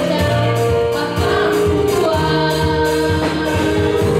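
Girls' gospel choir singing a praise song in harmony into microphones, backed by a live band with electric bass and a steady beat.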